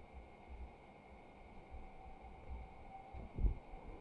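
Quiet room tone with a faint low hum, broken by one brief low thump about three and a half seconds in.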